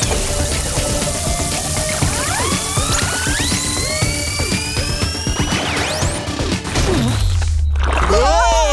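Cartoon background music with a sound effect: a pitched whistle-like glide rising steadily for about three seconds as the thieves are launched through the air, then a short falling glide into a low rumble near the end.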